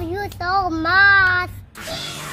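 A young child singing in a high voice, holding drawn-out notes that slide up and down, then breaking off about a second and a half in.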